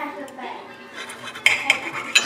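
Steel knife and fork cutting a roasted pork chop on a ceramic plate: quiet sawing, then a few sharp clicks and scrapes of metal against the plate in the last half second.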